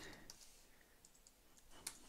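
Near silence with a few faint, separate computer keyboard keystrokes, the clearest one near the end.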